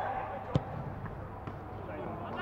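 A football kicked with one sharp thud about half a second in, followed by two fainter knocks, heard clearly in an empty stadium.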